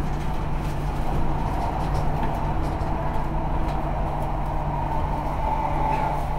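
Steady running noise inside the carriage of a moving electric multiple-unit train: wheels rumbling on the rails with a constant hum.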